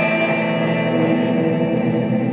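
A live band's electric guitars and violin holding a ringing chord with echo, the closing chord of the song; the tones stay steady, with no beat.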